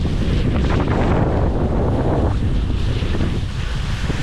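Loud wind noise buffeting the microphone of a moving skier, over the hiss of skis sliding through snow; the hiss eases a little after about two seconds.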